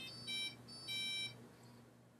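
Faint electronic beeps: a few short, steady high tones in quick succession, the last a little longer, stopping about a second and a quarter in.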